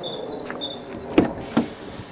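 A bird chirping a short run of high notes near the start, then two sharp knocks about a second and a second and a half in, the first the louder.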